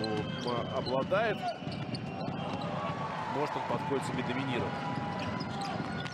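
Basketball game sound in an arena: a ball bouncing on the hardwood court over steady crowd noise, with voices calling out now and then.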